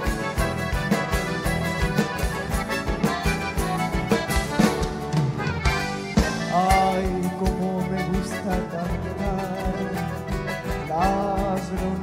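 Live chamamé band playing an instrumental passage: accordion melody over strummed acoustic guitars, bass and a steady beat.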